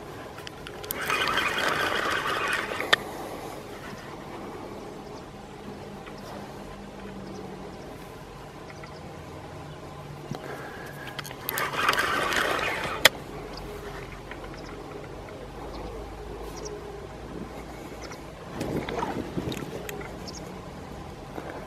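A fishing reel buzzing in two bursts of about two seconds, each ending with a sharp click, while playing a hooked sturgeon, with a shorter, lower burst near the end. A faint steady low hum runs underneath.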